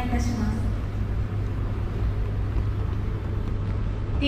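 Steady low rumble of ambience in a large, near-empty airport terminal hall. The end of a public-address announcement carries into the first half-second.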